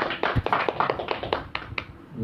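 A small audience clapping, many separate hand claps at once, thinning out and stopping just before the end.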